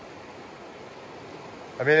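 River water rushing steadily over shallow rapids, with a man's voice starting near the end.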